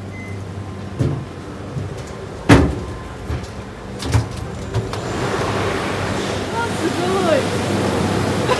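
A few sharp knocks and footfalls while climbing steel stairs. About five seconds in, the steady noisy rush of gondola lift station machinery rises and holds, with a few short squeals.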